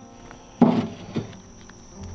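Slabs of stone being set down into a tractor's steel loader bucket: a loud clunk about half a second in and a lighter one about half a second later, over a faint steady high whine.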